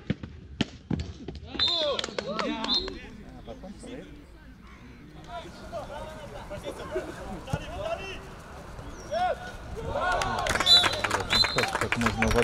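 Footballers shouting to each other on the pitch, with a few sharp ball kicks early on. The shouting swells and grows louder near the end.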